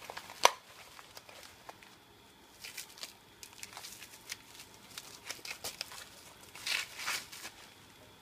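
Plastic packaging wrap crinkling and rustling as a part is unwrapped, in short bursts with scattered light clicks; a sharp click about half a second in is the loudest sound.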